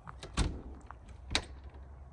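Handle of a locked wooden door being tried: a few sharp clicks and a thud as the door is pulled against its lock and does not open.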